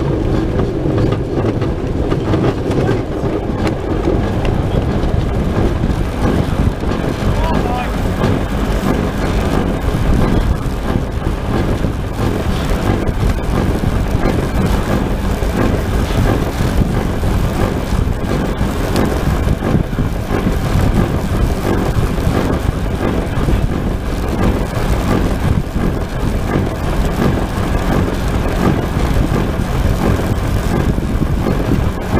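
Steady rushing noise inside the cockpit of a pedal-powered human-powered aircraft under way: airflow over the fairing and the pedal drive, heavy at the low end, with no breaks.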